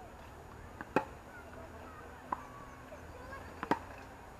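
Tennis ball being hit with rackets during a rally on an outdoor hard court: a sharp pop about a second in and another near the end, with a softer hit or bounce in between.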